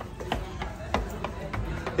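Handheld phone microphone jostled against hair and clothing as the phone is carried: a low rumble that swells near the end, with a few scattered soft knocks.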